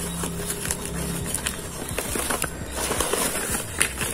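Paper wrapping rustling and crinkling in irregular little crackles as hands pull a tie string loose and peel the paper open, over a steady low hum.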